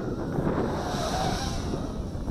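Wind buffeting the microphone in a steady rumble, with the faint whine of an Eachine Wizard X220 racing quadcopter's 2300 KV motors and propellers in flight, rising and falling briefly about halfway through.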